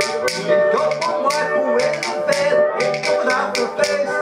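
A banjolele being strummed while a man sings, with sharp clicking hand percussion played along in a quick rhythm by a second performer.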